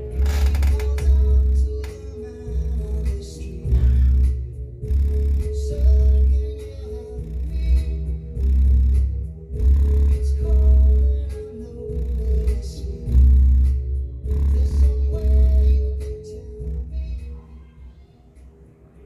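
A recorded song played loud, its heavy bass coming in long pulses, through a Ground Zero GZTW 12 MK2 12-inch subwoofer mounted in a plastic paint bucket instead of an MDF box. The bass fades down near the end.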